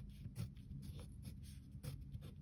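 Pencil writing on workbook paper: a quiet run of short, irregular scratching strokes as handwritten letters are formed.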